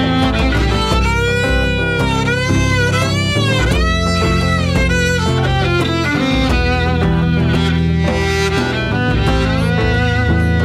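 Live acoustic band playing an instrumental passage: a violin carries a sliding melody with vibrato over strummed guitar and djembe.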